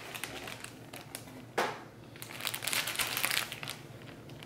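Clear plastic zip-top bag crinkling as it is handled, in irregular crackles: one sharp crackle about a second and a half in, then a denser run of crinkling until near the end.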